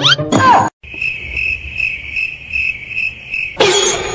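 Cricket chirping: a steady high trill pulsing about three times a second, likely the comic 'crickets' sound effect. It is framed by short sliding sound-effect tones at the start and a noisy swoosh near the end.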